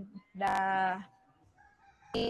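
A woman's voice holding a long, level "the" as she hesitates mid-sentence, followed by about a second of quiet room tone.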